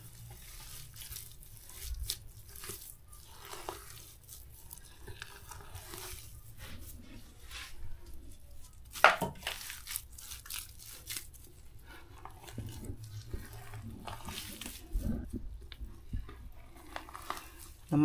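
Scattered handling noises, rustling, crunching and light knocks, with one sharp knock about nine seconds in.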